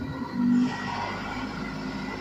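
Steady background drone of a dark ride's ambient soundtrack, with a short low hum about half a second in.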